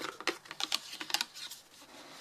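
Long fingernails tapping and scratching on a cardboard box while its flaps are handled: a quick, irregular run of light taps, then a softer rustle near the end.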